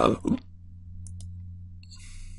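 A few soft computer-mouse clicks, about a second in and again near the end, with a brief soft hiss between them, over a steady low hum.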